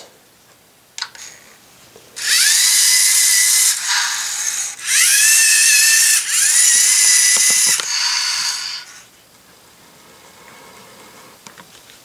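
LEGO Mindstorms EV3 servo motors of the GRIPP3R robot whirring as it drives on its tracks, grips a tire stack and turns. The sound comes in four runs, starting about two seconds in and stopping about nine seconds in, each opening with a rising whine.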